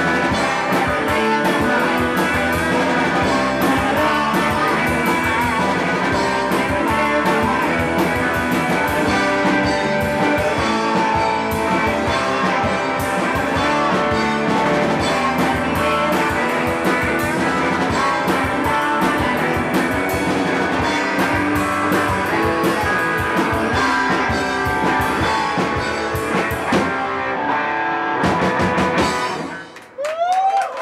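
Live rock band playing loud, with distorted electric guitars over a drum kit beating steadily. The song comes to its final stop in the last second or two.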